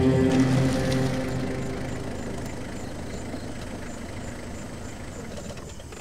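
Sustained soundtrack chords fade out over the first second or two, leaving a van's engine running low and steady. The engine sound slowly grows quieter.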